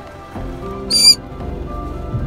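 A green-cheeked conure gives one short, loud squawk about a second in, over steady background music.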